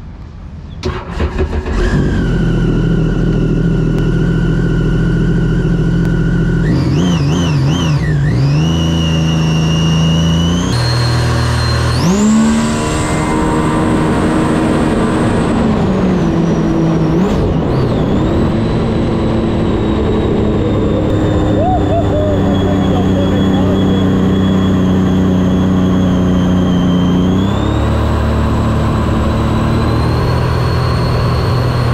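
Supercharged Sea-Doo jet ski engine coming up to speed within the first two seconds and then running hard at high throttle. The engine note and a thin high supercharger whine hold steady, then shift in pitch several times, dipping and climbing again about halfway through.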